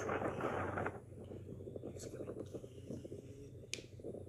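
A man talking, loudest in the first second and fainter after, over a steady low hum, with one sharp click near the end.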